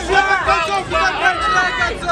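Several men's voices talking and calling out over one another, indistinct, with crowd chatter behind them.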